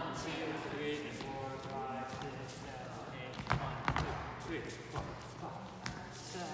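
Dancers' shoes stepping and landing on a wooden floor, with a few sharp thuds in the second half, the loudest about three and a half seconds in; voices talk in the background.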